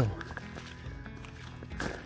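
Soft background music under a hiker's footsteps on a dirt trail while walking uphill, with a short hard breath near the end.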